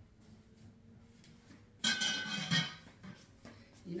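A glass cloche and a cake platter being handled and fitted together. About two seconds in there is a short clatter of glass knocking with a brief ring, and a smaller knock follows a second later.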